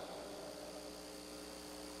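Faint steady electrical hum with a soft hiss underneath: room tone with nothing else happening.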